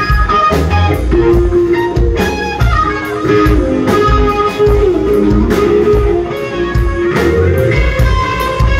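Live rock band playing loud: an electric guitar lead line with bending notes over drums and bass guitar.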